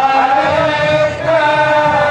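Devotional chanting in long held notes, each about a second long, that step in pitch with a short slide between them.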